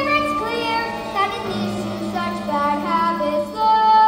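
A girl singing a show tune with instrumental accompaniment, ending on a long held high note near the end.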